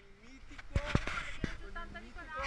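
Indistinct voices talking, with three sharp knocks in the middle of the stretch.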